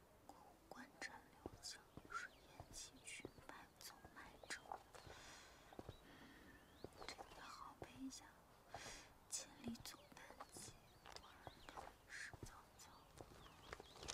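Near silence: faint background ambience with a few soft, scattered sounds.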